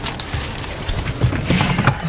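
Rustling and knocking as a person climbs into a pickup truck's cab through the open passenger door, with a louder rush of rubbing noise near the end.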